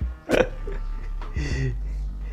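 Leaves and small shoots being pulled off a sancang bonsai by hand, with one sharp snap about a third of a second in. A short vocal noise, like a grunt or breath, follows past halfway.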